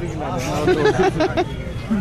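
Men's voices talking over the babble of a crowd, with a steady low background rumble.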